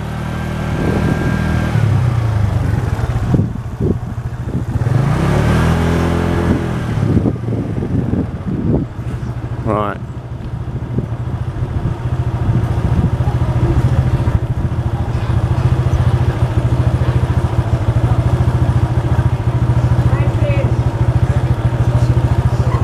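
A motorbike's engine runs steadily while riding along a street. Its pitch rises as it accelerates about five to seven seconds in.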